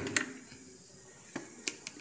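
A few light clicks and taps from hands handling a đàn tính, a Tày lute with a dried-gourd body and a long wooden neck. One click comes just after the start and three more come in quick succession near the end.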